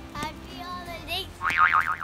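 A child's high-pitched squealing, with gliding then strongly wavering pitch, loudest near the end, over background music.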